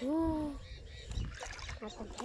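A short, drawn-out vocal note from a boy at the start, then low, faint sloshing and stirring of shallow water as hands feel around a bamboo fish trap.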